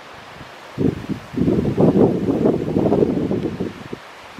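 Wind buffeting the microphone in irregular low gusts: a short gust just under a second in, then a long, strong one until shortly before the end.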